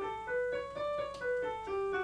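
A piano playing the D major scale one note at a time, about three notes a second, climbing to the top note about a second in and then stepping back down.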